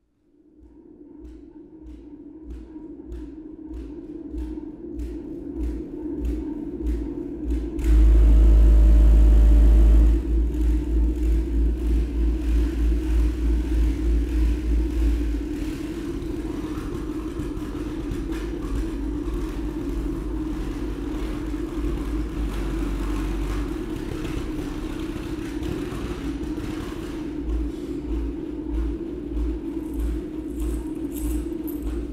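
Percussion ensemble playing a sustained drone with pulsing beats and rattling, following a "complex beating patterns, loud noisy rattling" cue. It grows out of silence with a run of quick clicks, swells into a very loud dense stretch from about eight to ten seconds in, then settles into a steady pulsing drone.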